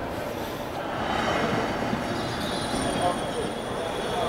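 JFK AirTrain passing on its elevated track, a rumble that swells about a second in, with a steady high whine joining it some seconds later.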